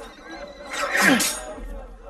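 A horse whinnying once, loudly, about a second in, its pitch falling at the end, over a low background of crowd voices.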